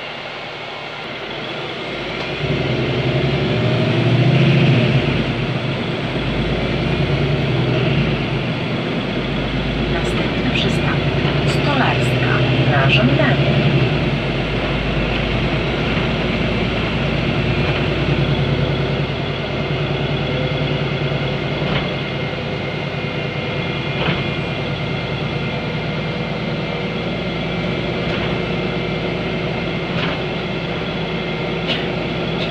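Inside a 2018 Ursus CitySmile 12LFD city bus: its Cummins ISB6.7 diesel engine and Voith automatic gearbox are running. The engine note rises as the bus pulls away about two seconds in, stays up, then eases off at about the halfway point.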